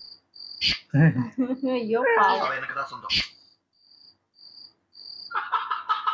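A run of about five short, faint, high-pitched chirps, evenly spaced over a second and a half, follows a stretch of film dialogue. A buzzy tone with a fast pulse starts near the end.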